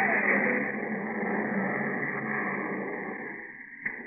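Sound effect of a spaceship taking off, made for radio drama: a rushing noise that fades away over the seconds, with a short click near the end.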